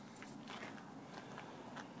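Faint rustling and a few light clicks of hand and camera handling close to the microphone, over a low hiss.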